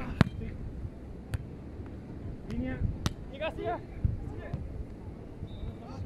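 Beach volleyball being played: sharp slaps of hands and forearms striking the ball, several separate contacts spread a second or so apart, the loudest just after the start. Players' short shouts come between the hits.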